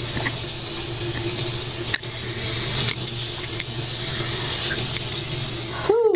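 Water running steadily from a tap into a sink, cut off abruptly at the very end.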